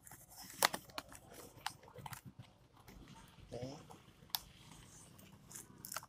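Plastic wrap and a cardboard box crinkling and clicking as a small boxed item is unwrapped and opened, with irregular sharp crackles, the loudest about half a second in.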